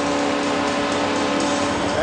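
Hockey arena crowd cheering and clapping after a goal, over a steady arena goal horn that stops near the end.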